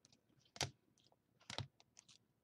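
Baseball cards in hard plastic holders being set down and shuffled on a countertop: two sharp plastic clacks about a second apart, with lighter ticks between.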